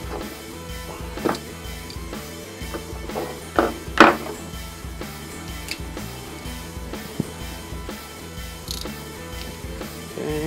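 Background music with a steady beat, over a few sharp metallic clicks from a click-type torque wrench set to 9 lb-ft as bolts on a Datsun N47 cylinder head are tightened, the loudest about four seconds in.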